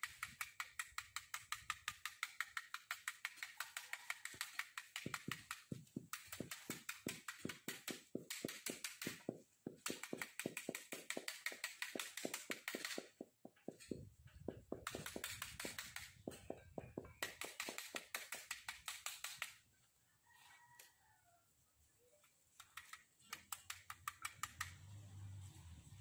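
Rapid, even tapping, about five taps a second, in runs of several seconds with short breaks: a loaded paintbrush being rapped against a stick to spatter white speckles of paint. It stops about 20 s in, and weaker tapping returns near the end.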